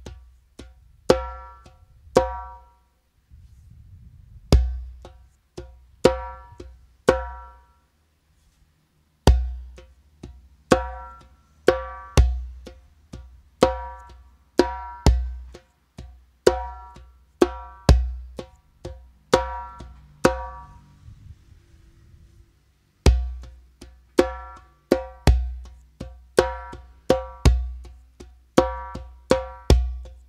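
A REMO djembe played by hand in a triplet feel: a deep bass stroke followed by a run of quiet and loud slaps (bass, left, right, LEFT, right, LEFT), repeated phrase after phrase. The playing pauses briefly a couple of times.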